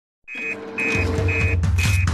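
Electronic alarm beeping, short high beeps about twice a second over a steady lower tone: the fire-station emergency-call alert. A bass beat of the theme music joins in about a second in.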